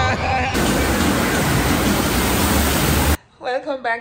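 A loud, steady rushing hiss that cuts off abruptly about three seconds in, after which a woman starts speaking.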